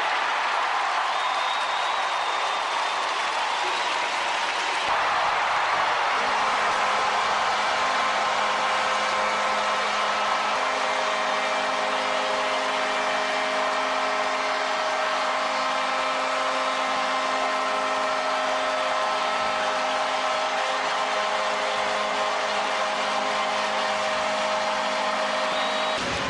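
Arena crowd cheering in a steady roar at the end of a hockey game, with several steady tones joining it about six seconds in and holding.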